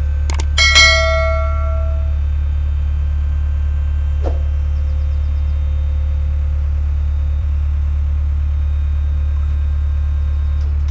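Clicks and a bright bell ding about a second in, a subscribe-button sound effect that rings out and fades. Beneath it, a steady low hum from a dump trailer's hydraulic pump as the bed tips up.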